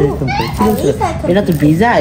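Speech: voices talking, with no other sound standing out.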